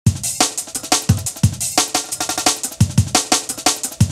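Ragga jungle drum and bass beat: a fast, busy chopped breakbeat of snare and hi-hat hits over deep kick drums that drop in pitch.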